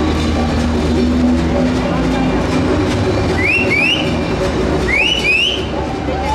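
A heavy vehicle's engine running steadily under crowd chatter. From about halfway in come repeated pairs of short rising whistles.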